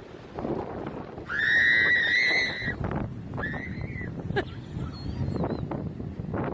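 Gull calling: one long call of about a second and a half, then a shorter call that rises and falls, over steady wind and surf noise.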